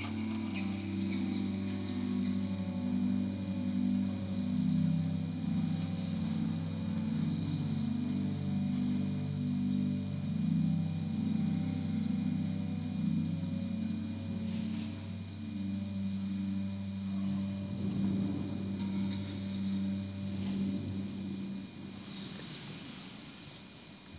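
Church organ playing slow, soft sustained chords over a held low pedal note. The chords and bass stop about a second before the end as the piece finishes.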